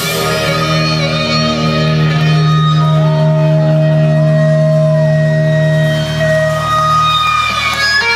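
Live rock band playing through a stadium PA, heard from the crowd through a phone microphone: electric guitar holding long sustained notes over a deep, steady bass note.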